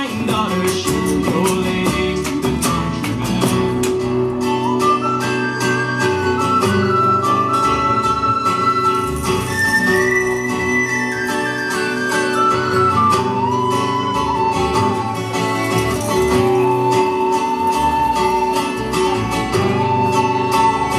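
Instrumental break in a live Irish folk song: a tin whistle plays the high, ornamented melody over strummed acoustic guitars, upright bass and bodhrán.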